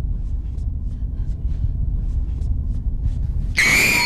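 Horror-film sting: a quiet, low rumbling drone with faint clicks, then near the end a sudden loud, high shriek cuts in.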